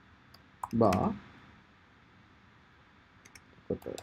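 Keystrokes on a computer keyboard, typing out code: a few separate taps, then a quicker group of taps near the end.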